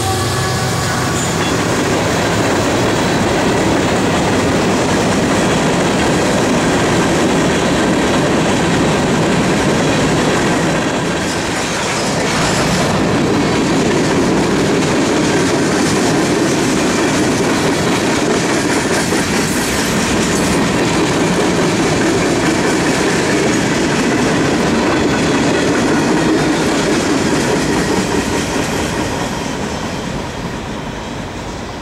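A freight train's cars rolling past close by at speed, a steady rumble of steel wheels on the rails. The sound dips briefly about twelve seconds in and fades near the end as the last cars go by.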